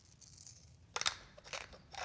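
Pepper mill grinding peppercorns: a few short crunching grinds starting about a second in.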